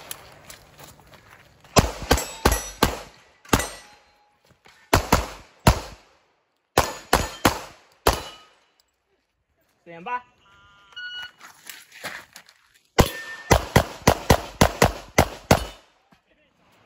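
Pistol shots fired in quick strings during a practical-shooting stage: a burst of about five, then groups of three or four with short pauses, and a fast run of about ten near the end. Some hits ring on steel plate targets.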